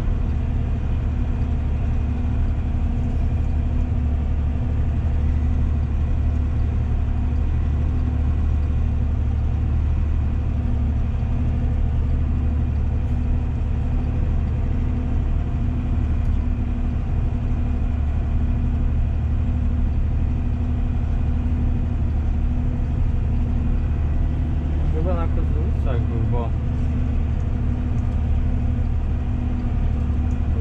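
Valtra tractor's diesel engine running at a steady, unchanging speed, heard as a loud low drone from inside the cab while the tractor compacts a grass silage clamp with a front-mounted silage distributor.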